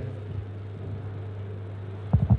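Room tone: a steady low hum with a faint hiss.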